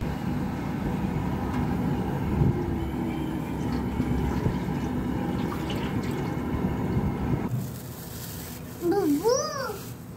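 Cooking oil poured in a steady stream from a metal can into a large, empty aluminium cooking pot, stopping about seven and a half seconds in. A child's voice is heard briefly near the end.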